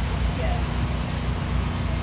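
A steady low engine drone with an even background of noise underneath.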